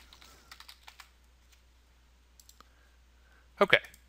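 Faint computer keyboard keystrokes and mouse clicks, a scattered handful in the first two and a half seconds.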